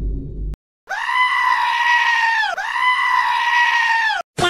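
The tail of a low boom fades out in the first half second. After a short gap comes a long, high, steady scream sound effect lasting about three seconds, with a brief break in the middle where the pitch dips and comes back.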